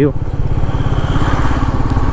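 Royal Enfield Meteor 350's single-cylinder engine running steadily under way, heard from the rider's seat, with an even, rapid exhaust pulse.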